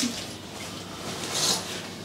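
Pen writing on the paper of a sign-in register: a click at the start, then a brief soft scratch about a second and a half in.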